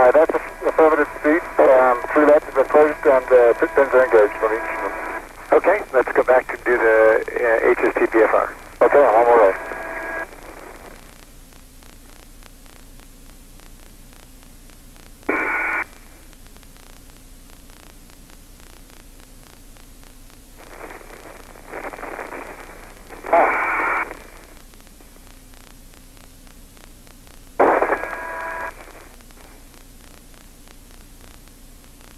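Astronauts' voices over a narrow-band radio link during a spacewalk, thin and band-limited, talking for about the first ten seconds; after that a low steady hiss, broken by a few short bursts of radio voice or noise.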